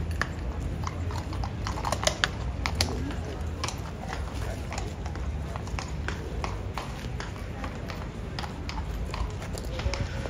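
Shod hooves of a King's Guard cavalry horse clip-clopping on stone paving as it steps about and turns, a string of sharp, irregular strikes. Crowd chatter runs underneath.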